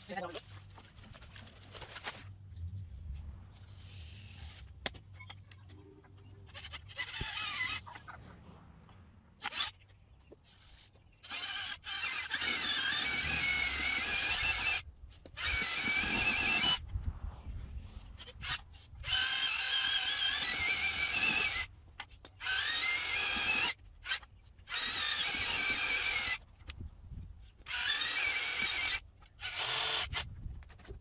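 Cordless drill with a paddle mixer stirring modified thinset mortar in a plastic bucket: the motor's whine, run in repeated stop-start bursts of one to three seconds, starting about seven seconds in.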